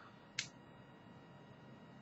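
Near silence with room tone, broken by one short, sharp click a little under half a second in, as a small e-cigarette cartomizer is handled in the fingers.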